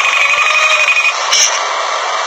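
A high electronic ringing tone for about the first second, over a steady noisy background.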